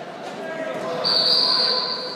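A whistle blows one steady, shrill note lasting about a second, starting about a second in, over voices in the hall.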